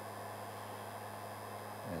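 Steady low hum with an even hiss from a heat gun running on a low temperature setting.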